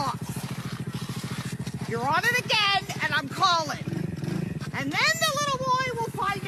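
Small motorbike engine idling steadily with a fast, even putter, and a man's raised voice over it about two seconds in and again near the end.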